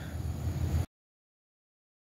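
Steady low background hum with a light hiss that cuts off abruptly just under a second in, leaving dead silence.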